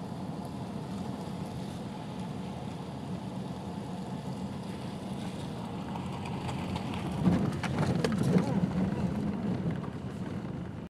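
Car cabin road noise from driving at a steady pace, a constant rumble of tyres and engine. From about seven seconds in, as the car runs onto the dirt road, a burst of knocks and rattles from bumps and gravel.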